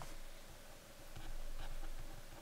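Stylus writing on a tablet: faint, short scratches and light taps as words are handwritten stroke by stroke.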